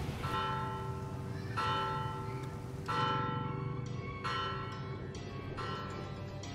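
A church bell ringing, struck repeatedly at roughly one-second intervals, each stroke ringing on before the next; a steady low hum runs underneath.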